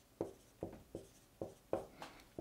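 Marker writing on a whiteboard: about five short, faint strokes as a number is written.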